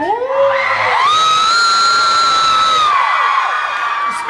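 Audience of fans screaming and cheering, with one shrill scream held steady for about two seconds in the middle.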